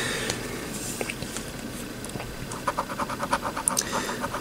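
Scratch-off lottery ticket having its silver coating scratched off the centre star in rapid rubbing strokes. The scratching quickens into a fast, even rhythm of about eight strokes a second in the second half.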